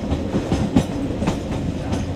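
Passenger train running along the track, heard from aboard a coach: a steady low rumble with repeated sharp clacks of the wheels over the rail joints.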